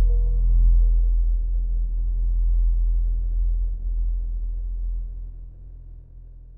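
The tail of an electronic drum and bass track: the rest of the music has dropped out, leaving a deep, steady synthesized bass tone with a faint thin tone above it, fading out over about five seconds.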